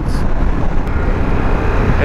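Harley-Davidson Pan America motorcycle cruising at highway speed. A steady rush of wind and road noise over the low rumble of the engine, heard from a camera worn by the rider.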